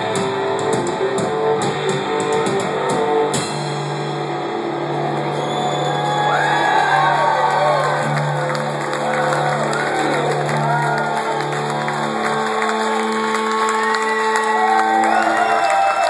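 A rock band's guitars strumming fast, cutting off abruptly about three and a half seconds in to a held chord that rings on as the song ends. Audience cheering and whooping over the sustained chord.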